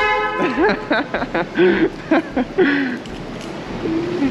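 A brief, steady, horn-like tone at the very start, then a man's voice laughing and hollering in short bursts without words.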